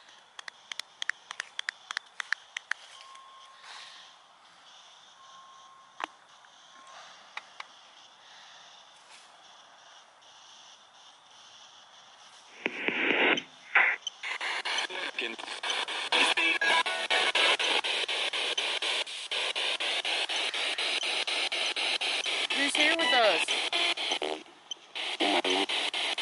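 A spirit box scanning through radio stations. About halfway through, loud hissing static starts, chopped by the rapid sweep, with broken fragments of broadcast voices and music. Before it starts there are only faint scattered clicks and two short, faint tones.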